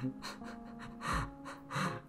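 A woman's short breaths and soft laughing gasps close to the microphone, a few of them, over quiet background music, with a soft low bump a little past halfway.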